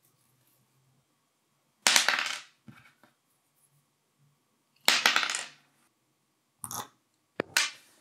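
Plastic tube and 3D-printed coil spool handled on a desk: two sharp scraping clatters of about half a second each, then two shorter knocks near the end as the tube is stood upright on the tabletop.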